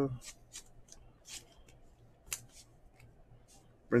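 Trading cards and a plastic card sleeve being handled: a scattering of short, sharp rustles and card clicks as cards are slid and flipped, the loudest about two thirds of the way through, over a faint steady low hum.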